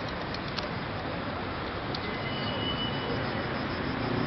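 Steady noise of city road traffic, with a few faint clicks in the first second.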